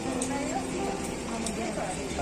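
People's voices over background music with held notes, and a few sharp clicks about a second apart.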